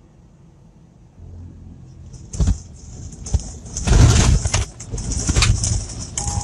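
Truck cab jolting and rattling as the truck runs off the road onto rough ground: loud, irregular thumps and clattering begin about two seconds in and are heaviest around four seconds.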